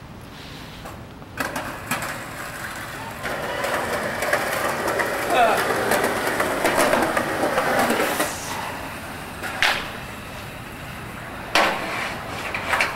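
Indistinct voices of a few people talking over one another, loudest in the middle, with several sharp knocks, one of them near the end.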